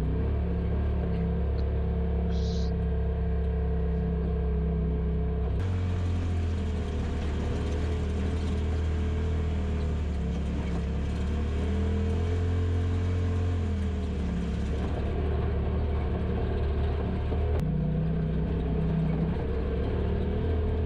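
Polaris RZR Pro XP side-by-side's twin-cylinder engine droning steadily as it drives along a rough dirt trail. Its pitch drops a little about six seconds in and rises again near the end as the throttle changes.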